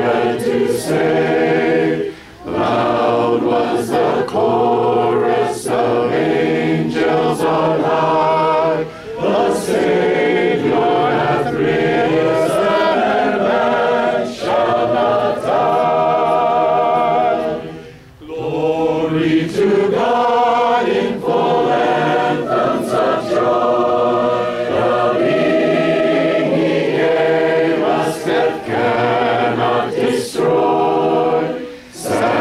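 Congregation of men, women and children singing a hymn together a cappella, with short breaks between lines and a longer pause about 18 seconds in before the next line begins.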